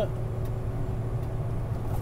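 Steady low rumble of engine and road noise inside a vehicle's cabin while cruising at highway speed.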